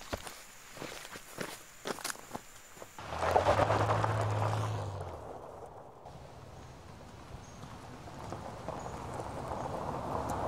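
Footsteps on dry leaf litter, a run of separate steps, for about three seconds. Then a minivan drives past on a dirt road, its engine and tyres on the gravel loudest at first and fading away, and the sound of a vehicle on the road builds again near the end.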